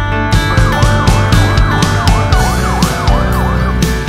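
Police siren sweeping quickly up and down in pitch, about two to three cycles a second. It starts about half a second in and stops shortly before the end, heard over background music.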